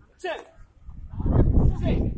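A man shouting a drill count, then from about a second in a group of children yelling together, much louder, as they drop into low stances.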